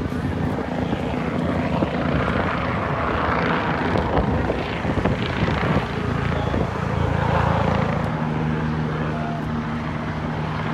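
Helicopter flying low past, its rotor beating fast and steadily over a constant engine hum.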